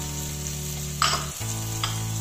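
Chopped tomatoes and onion frying in ghee in a stainless steel pressure cooker, with a steady sizzle. A spoon stirs and scrapes against the pan about a second in, with a smaller scrape near the end.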